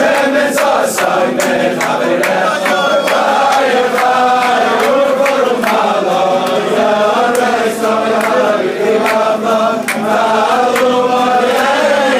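A large crowd of men singing a Jewish religious song together in one melody, with sharp hand claps keeping the beat.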